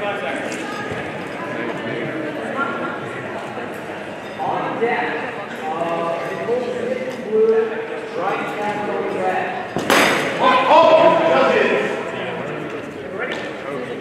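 Voices echoing in a large hall, with one sharp clack about ten seconds in.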